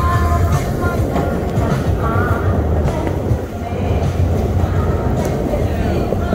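Steady low rumble of wind and motion noise on a phone microphone carried on a moving bicycle, with faint music in the first moments.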